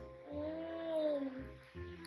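A woman humming one long 'mmm' of enjoyment with her mouth closed while chewing a momo, rising and then falling in pitch, over soft background music.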